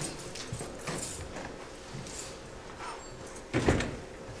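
Scattered light knocks and rustling, with one louder, deeper thump about three and a half seconds in.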